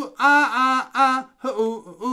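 A man's unaccompanied voice chanting short gorilla-style 'ooh' and 'ah' syllables, about three a second, at a steady pitch.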